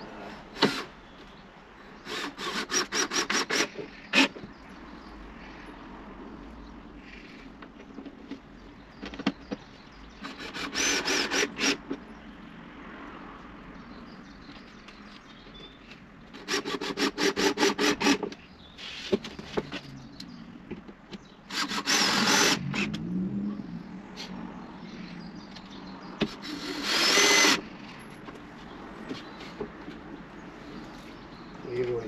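Power drill running in about five short bursts of a second or two each, with pauses between.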